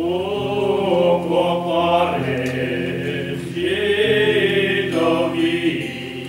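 A trio of men's voices singing a hymn together in harmony, in slow phrases of long-held notes.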